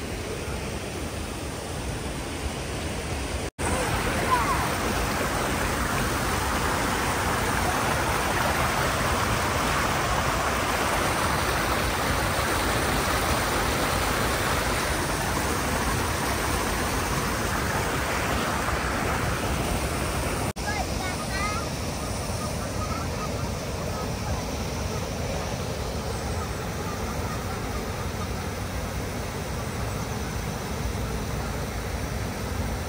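Water pouring over a small weir into a stream: a steady rush of falling water, fuller through the middle stretch, that cuts out abruptly for an instant twice.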